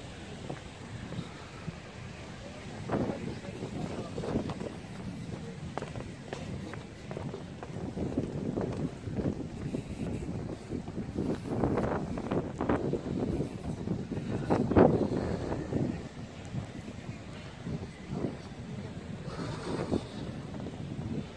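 Wind buffeting the phone's microphone in irregular gusts, strongest about fifteen seconds in, with indistinct voices in the background.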